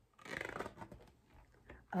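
A thick board-book page being turned by hand: a short papery rustle and scrape of cardboard about half a second long, then a few faint crackles as the page settles.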